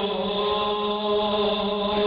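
A man's voice chanting into a microphone, holding one long steady note.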